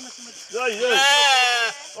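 A sheep bleating: one long, quavering bleat of about a second.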